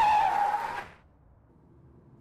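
Car tyres screeching under hard braking: one squeal that slides slightly down in pitch and stops about a second in.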